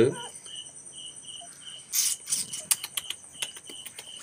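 Insect chirping, short pulses about four a second, over a steady high insect hum. About two seconds in there is a brief rustle, the loudest sound, and then scattered faint clicks.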